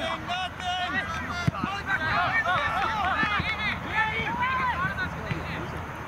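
Several voices shouting and calling out over one another on a soccer field, many short raised calls overlapping, with one sharp thump about a second and a half in.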